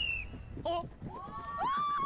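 Edited TV-show sound effects: a short high beep, then a clear electronic tone that slides up about a second in and holds as a steady note. A brief voice is heard in between.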